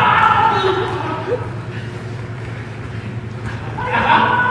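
Players' voices calling out during an indoor soccer game, echoing in a gymnasium, loudest in the first second and again near the end, over the general noise of play on the hard floor.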